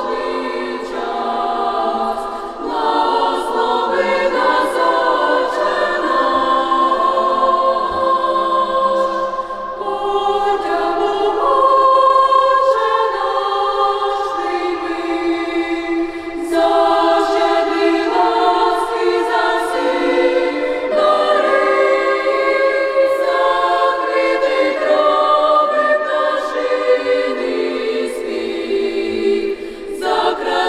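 Girls' youth choir singing a Ukrainian church song a cappella, several parts in sustained chords with only high voices and no bass, the phrases parted by short breaths.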